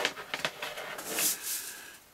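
Handling noise: a mesh bag of bio gravel picked up off a table, a few light clicks and then a brief rustle as the gravel shifts inside the bag.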